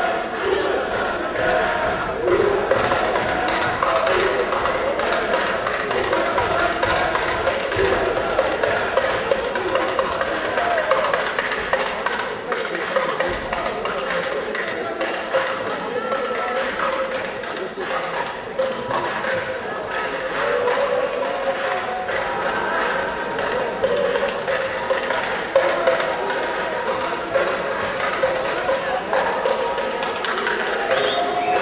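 Busy gymnasium noise in an echoing hall: indistinct voices and shouts mixed with background music, with frequent irregular sharp claps and knocks throughout.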